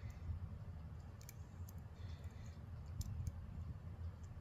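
Faint, irregular clicks of a short hook pick working the pin stacks inside a brass euro cylinder lock held under tension by a turning tool.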